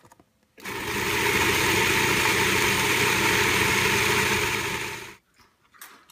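Food processor motor running, chopping tomatoes, onion and peppers into salsa. It starts about half a second in, runs steadily for about four and a half seconds, and stops shortly before the end.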